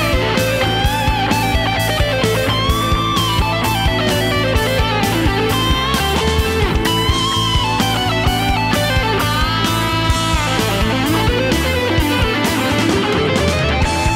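Instrumental break in a progressive rock song: a lead electric guitar plays gliding, bent notes over a steady drum beat and bass.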